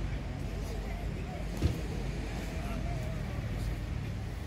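Outdoor beach ambience: distant voices over a steady low rumble, with one short knock about one and a half seconds in.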